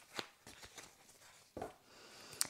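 Tarot cards handled in the hands: two faint flicks of card sliding off the deck as cards are drawn, one near the start and one past the middle.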